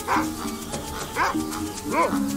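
A dog barking a few short times over soft, steady background music.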